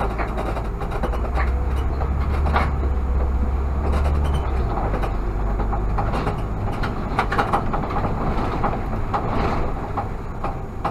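Irisbus Citelis CNG city bus running on the road. Its low engine drone is strongest for the first four seconds or so, then eases as the bus slows toward a stop, with a scatter of short rattles and knocks throughout.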